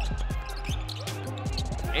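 Basketball being dribbled on a hardwood court: a steady run of bounces, about three a second, with music playing underneath.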